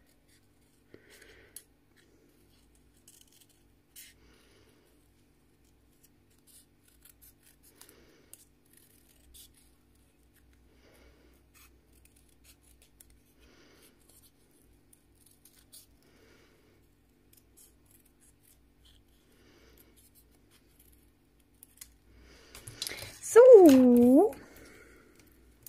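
Small scissors snipping thin craft paper in faint, scattered short cuts. Near the end, a loud, brief voiced sound from a person, sliding down in pitch.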